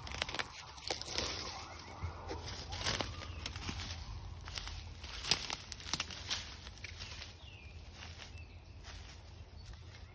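Footsteps crunching through dry fallen leaves and twigs on a forest floor, a quick irregular series of crackles that thins out after about seven seconds.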